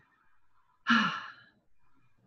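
A person's short voiced sigh about a second in: a breathy exhalation that falls in pitch and fades out.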